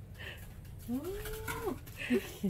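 A woman's drawn-out vocal exclamation about a second in, rising, holding and then falling in pitch, with a few faint clicks around it.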